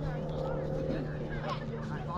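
Faint, distant voices over a steady low hum.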